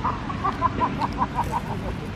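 A bird calling: a quick run of about nine short, similar notes over the first second and a half, above a low steady background rumble.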